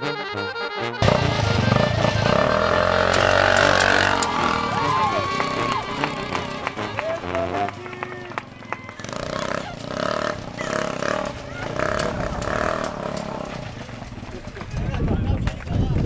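Accordion music cuts off about a second in. Then the home-built buggy's small engine, taken from an old Kymco motorbike, runs as the buggy drives away across pavement, with people's voices from about nine to thirteen seconds.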